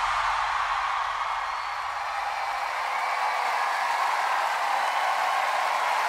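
Live studio audience cheering and applauding: a steady wash of crowd noise.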